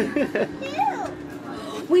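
Speech only: children's voices talking.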